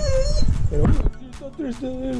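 A dog whining, with a high wavering whimper at the start and a falling whine near the end.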